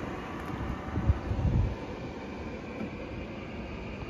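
Steady outdoor background noise with a low rumble that swells about a second in and eases off by two seconds.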